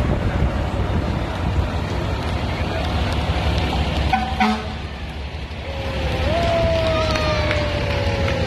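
Fire engine's mechanical siren winding down, then winding up quickly about six seconds in and coasting slowly down in pitch, over the steady rumble of the truck engines. A short horn blast sounds about four seconds in.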